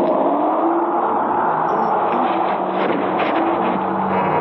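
Loud, steady electronic noise from an old science-fiction film's soundtrack: a dense rushing sound with faint wavering tones inside it.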